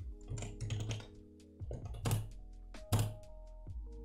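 Computer keyboard typing: a few scattered keystrokes, the loudest two about two and three seconds in. Background music with held notes plays underneath.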